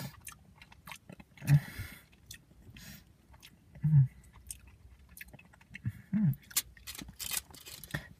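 A person chewing milk chocolate: soft, irregular mouth clicks and smacks, with a few brief low hums.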